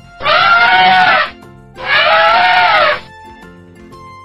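Elephant trumpeting twice, each call about a second long and arching up then down in pitch, over light children's background music.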